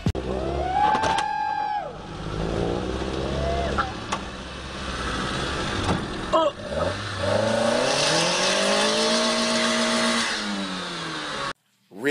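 Car engine revving up and down several times: a short rev about a second in, more revs a couple of seconds later, and a longer rise and fall near the end before the sound cuts off abruptly.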